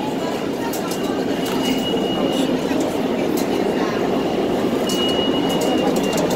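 New York City subway train running in the station: a steady loud rumble with a thin high-pitched tone that comes and goes a few times.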